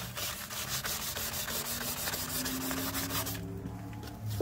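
A pad being rubbed back and forth by hand over a yellowed plastic ATV headlight lens, in fast, even, scratchy strokes that stop a little over three seconds in. It is abrading off the yellow oxidation to clear the lens.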